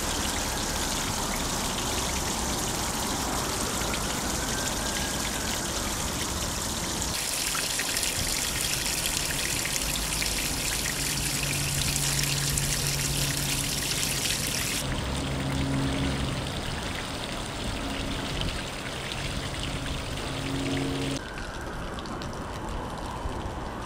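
Water jetting from a hose onto cobblestones, a steady rushing spray. A low steady machine hum joins about halfway through, and the sound shifts abruptly at two points.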